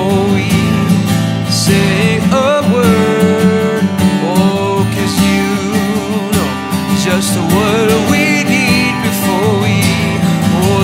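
A man singing a slow worship song while strumming an acoustic guitar, his held notes wavering over steady chords.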